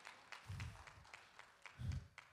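Faint, scattered handclaps with low murmured voices from a church congregation.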